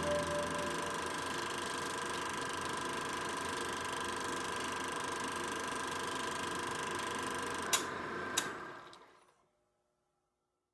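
A small machine running steadily with a constant hum over a hiss, two sharp clicks about three-quarters of the way in, then fading out. The tail of a plucked chord rings away at the very start.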